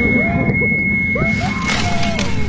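Horror-trailer sound design: a dense low rumble under a thin, steady high-pitched tone that stops near the end, with garbled voice-like sounds rising and falling through it.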